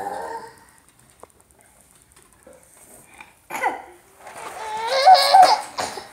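A person laughing: a short laugh at the very start, a quiet stretch, then a louder, high-pitched laugh near the end.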